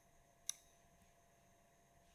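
Near silence with a single faint click about half a second in: a computer mouse button being pressed.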